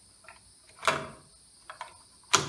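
Yellow nonmetallic electrical cable being pulled and bent where it leaves a plastic outlet box: one short, sharp scrape a little under a second in, then two faint clicks near the end.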